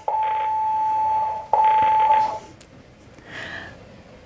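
Electronic telephone ringer sounding: two long, steady beeps of one pitch, each about a second, with a short gap between them.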